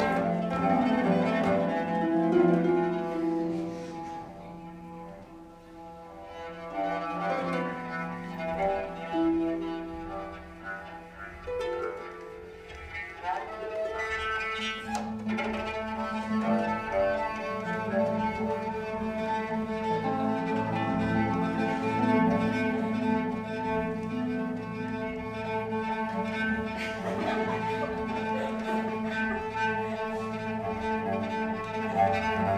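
Cello and concert harp improvising together: long bowed cello notes with the harp alongside. The playing drops softer a few seconds in, then swells fuller from about halfway with a held low cello note.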